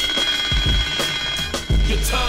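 Mechanical twin-bell alarm clock ringing as a time's-up signal, mixed with music. The high ringing stops about three-quarters of the way through and a deep low sound comes in near the end.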